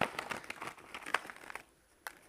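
Clear plastic bag crinkling, with die-cut paper pieces rustling, as hands rummage inside and pull a few pieces out: a run of small crackles that dies away shortly before the end.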